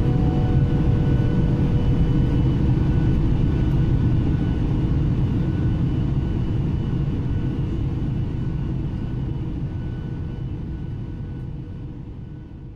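Jet airliner cabin noise in flight: a steady low rumble of the engines and airflow, with a few faint steady whine tones above it, slowly fading out over the second half.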